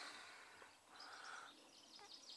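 Near silence: faint outdoor background noise, with faint high bird chirps from about halfway through.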